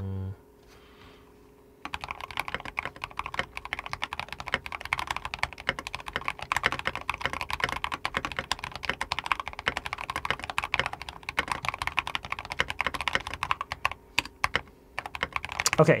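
Fast typing on a computer keyboard: a dense, steady run of key clicks that starts about two seconds in and stops just before the end.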